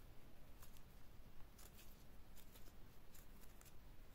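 Faint, irregular light ticks and rustles of a crochet hook working yarn as stitches are made.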